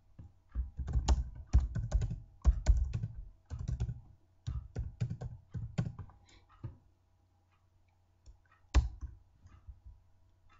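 Computer keyboard typing: quick runs of keystrokes for most of the first seven seconds, a short lull, then a single louder key press near the end. A faint steady hum sits underneath.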